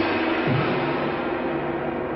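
Cartoon sound effect of a loud metallic crash, a blow that rings on like a struck gong.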